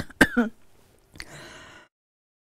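A woman coughing and clearing her throat, two sharp bursts with a falling voiced tail in the first half-second. About a second later comes a click and a short rustle, then the sound cuts off dead as her microphone is switched off.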